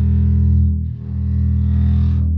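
Home-built 3/4 double bass with a heat-formed polycarbonate body sounding two long, low notes, the second starting about a second in.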